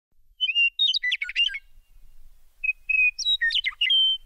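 A songbird singing two similar phrases. Each phrase is a whistled note followed by a quick run of warbling, gliding notes. The second phrase begins about two and a half seconds in.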